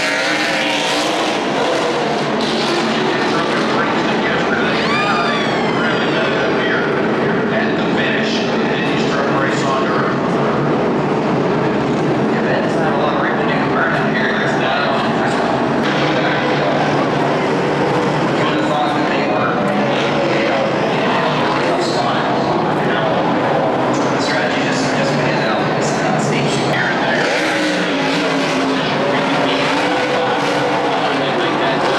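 A field of NASCAR race trucks' V8 engines running at speed on a dirt oval in a dense, continuous wash of engine noise. One engine note climbs sharply about five seconds in.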